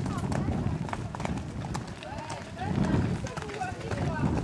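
A pony's hoofbeats as it canters on a wet sand arena, a series of soft irregular thuds, with a person's voice faintly in the background.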